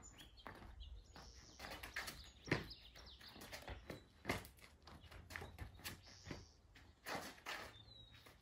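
Sneaker footfalls and scuffs on a paved patio during a fast shuffle, pivot and lunge footwork drill: a run of faint, irregular steps and taps, the strongest about two and a half seconds in and again just after four seconds.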